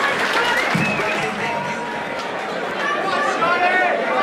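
A crowd of many voices talking and calling out at once in a large hall, with no single voice standing out.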